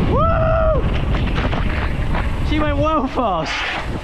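Heavy wind buffeting on an action camera's microphone and tyres rumbling on concrete as a mountain bike descends a steep dam spillway at full speed. A held yell comes right at the start and a few falling shouts about three seconds in.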